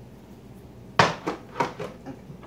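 Containers of sauce knocking on a kitchen counter as they are handled: one sharp, loud knock about a second in, then three lighter knocks in quick succession.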